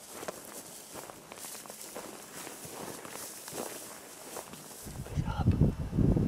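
Soft footsteps of a barefoot hunter walking quickly through dry, short prairie grass: faint light crunches and rustles. About five seconds in, a louder low rumble comes in.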